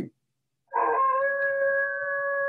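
A lone wolf howling, one long steady call starting about two-thirds of a second in: the 'lonely howl', a wolf's way of saying 'I'm over here, where are you?' to the rest of its pack.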